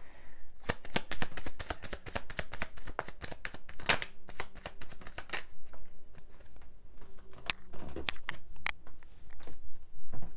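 A tarot deck shuffled by hand: a fast run of card clicks for about five seconds, then fewer, spaced clicks as the cards are worked more slowly.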